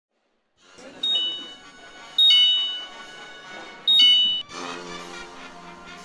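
Three short, loud two-note electronic chimes, each dropping from a high tone to a slightly lower one, over a background of voices. Music comes in about four and a half seconds in.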